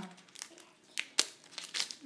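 Foil wrapper of a Pokémon card booster pack crinkling in the hands in short, irregular rustles after being torn open, with one sharp click about a second in.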